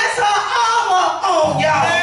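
A woman preaching into a handheld microphone, her voice rising and falling in pitch. A low held musical note comes in about a second and a half in and sustains under her voice.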